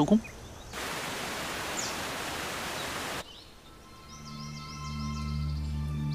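A steady rush of even, hiss-like noise for about two and a half seconds that cuts off suddenly, then soft ambient music of held tones fading in about four seconds in, with short high bird chirps over it.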